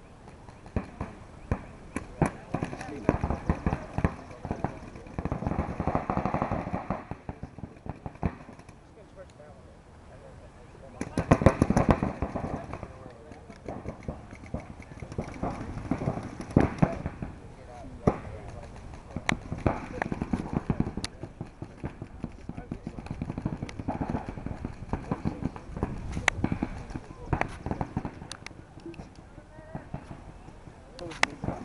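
Paintball markers firing: sharp pops scattered throughout, some in fast strings, densest about a third of the way in, over indistinct shouting.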